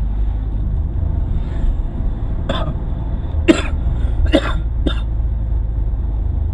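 A person coughing four times in short bursts in the second half, over the steady low drone of a car's engine and tyres heard from inside the cabin.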